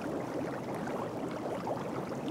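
Hot tub jets bubbling and churning the water, a steady fizzing wash with many small bubbling pops.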